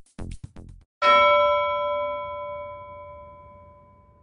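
Electronic music with a fast beat ending just under a second in, then a single bell-like chime struck about a second in, ringing out and slowly fading over about three seconds.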